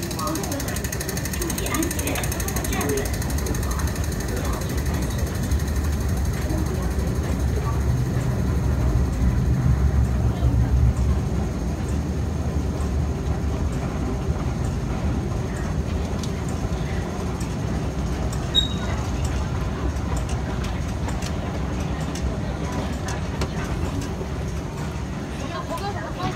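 Underground railway station ambience: a steady low rumble and hum of escalators and station machinery, with indistinct voices of passengers. The rumble swells for a few seconds in the middle, then settles back.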